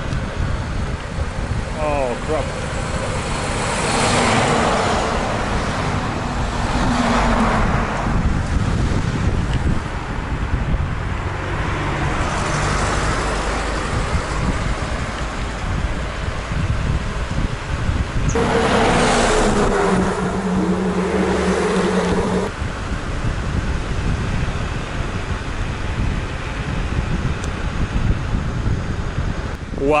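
Road traffic heard from a moving scooter: a steady rush of wind and road noise with motor vehicles passing in several swells. About two-thirds of the way through, a passing vehicle's engine note holds steady for a few seconds, then cuts off suddenly.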